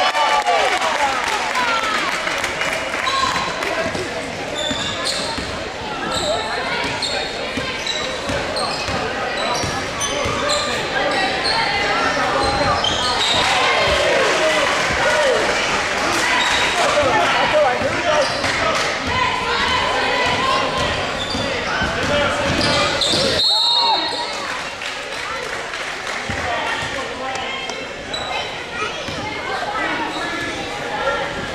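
Live girls' basketball game in a reverberant gymnasium: the ball bouncing on the hardwood court and sneakers squeaking, with shouting voices from players and spectators over it. A short shrill tone about 23 seconds in is followed by a quieter stretch.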